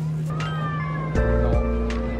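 Lo-fi hip-hop background music: sustained bass and keyboard chords that change about a second in, with drum hits and a short falling, meow-like glide near the start.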